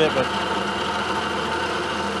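Milling machine running, its end mill cutting along the side of a metal block on a light finishing pass: a steady machine hum with several constant tones and cutting noise.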